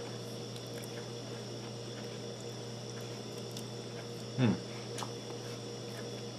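Steady low room hum with a few faint clicks, and a short "mmm" of someone savouring food about four seconds in.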